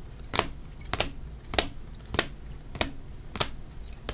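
Hard plastic card holders clicking against each other as the cards are swapped through the stack: a steady series of sharp clicks, a little under two a second.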